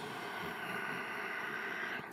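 A slow, steady audible breath lasting about two seconds, with a soft hiss drawn through the throat.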